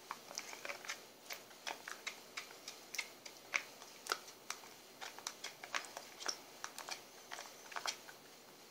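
A spoon clicking and scraping against a small bowl while stirring a honey and lemon mixture: a quick, irregular run of light clicks.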